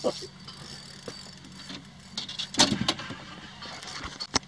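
Handling noise from a camera being moved and covered: rustling, then a cluster of sharp knocks and clatters about two and a half seconds in, over a steady low hum.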